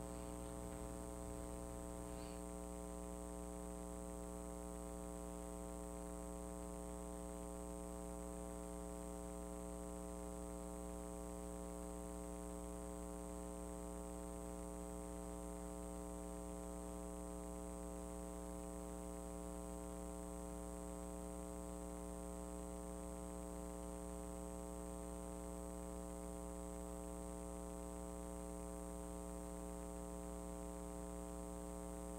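Low, steady electrical buzz: a mains hum with a stack of overtones, unchanging throughout.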